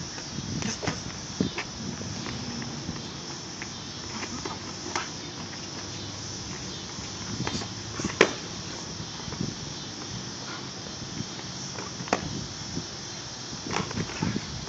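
Boxing gloves striking during sparring: scattered sharp smacks of gloved punches, the loudest about eight seconds in and two more near the end, over a steady outdoor hiss.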